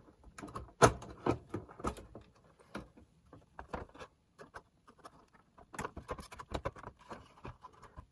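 Plastic back case of a Sharp GF-8080 cassette boombox being prised off and handled: scattered clicks and knocks, the loudest about a second in and a run of smaller ones near the end.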